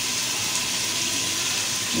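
Steady sizzling hiss from the cooking pot on the stove, with no break or change.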